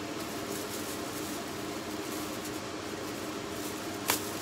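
Steady background hum with a faint low drone, and faint rustling as a plastic shopping bag is rummaged through.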